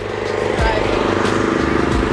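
A car engine running close by, swelling over the first half-second and then holding steady with a fast, even pulse.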